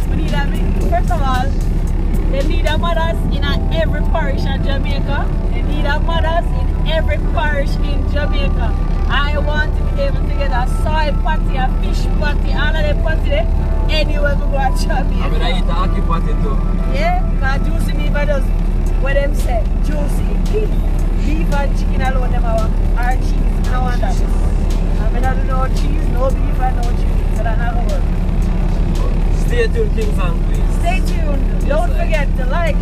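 Steady low rumble of a car's engine and tyres heard from inside the cabin while driving, with voices going on over it throughout.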